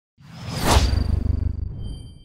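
Intro logo sound effect: a whoosh that swells and peaks about half a second in over a low rumble, then fades, leaving a faint high ringing tone.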